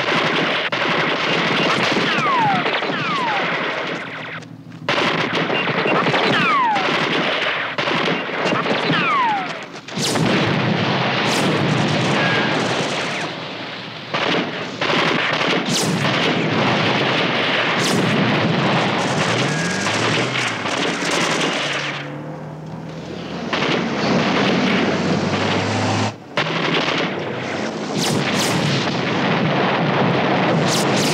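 Staged TV action soundtrack of sustained automatic gunfire with explosions. Several falling whistles sound in the first ten seconds, and the firing eases off briefly a few times.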